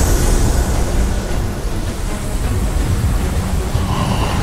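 Animation sound effect of a swirling energy portal: a loud, continuous low rumble that holds steady.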